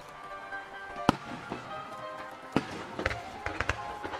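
Aerial firework shells bursting: a sharp report about a second in, another at about two and a half seconds, then a quick run of smaller cracks near the end. Show music with sustained tones plays underneath throughout.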